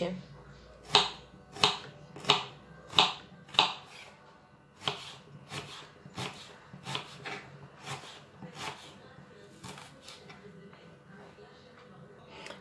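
Kitchen knife chopping a peeled onion on a wooden cutting board: a few firm strokes about two-thirds of a second apart, then lighter, quicker cuts that fade out.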